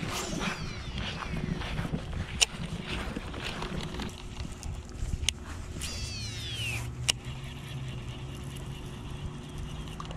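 Shimano SLX baitcasting reel's spool whining on two casts, the pitch falling over about a second each time as the spool slows, once just after the start and again about six seconds in. There are a few sharp clicks as the reel is handled, the last one just after the second whine, over a faint steady hum.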